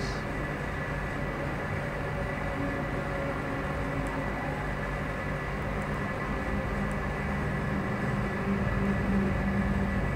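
Steady low mechanical hum with hiss, growing a little louder near the end.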